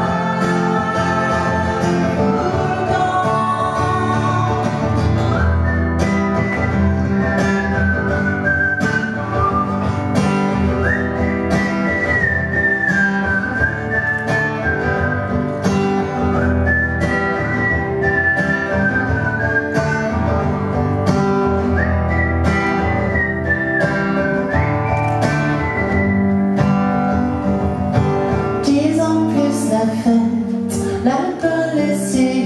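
Live performance of a song on acoustic guitar, with a high melody line that slides between held notes through the middle.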